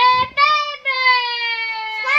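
A young girl singing, holding long notes that slowly fall in pitch, with a short break about half a second in.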